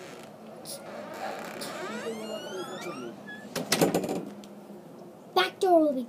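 A front door's handle and latch rattled, a short clatter about two-thirds of the way in, followed by a child's brief wordless vocal sounds.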